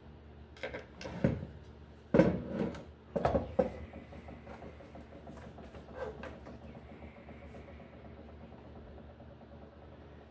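Hand tools and a light fixture housing being handled on a wooden table: a run of short knocks and clicks in the first four seconds, the loudest just after two seconds, and one more about six seconds in.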